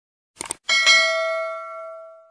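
Notification-bell sound effect from a subscribe-button animation: two quick clicks, then a bell chime that rings out and slowly fades.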